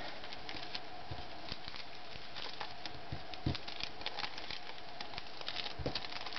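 Scattered light taps, clicks and rustles of handmade paper cards being handled and laid down on a cutting mat, over a faint steady hum.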